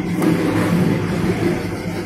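A steady, loud mechanical hum like a running engine, under a busy background noise, with a faint click or two.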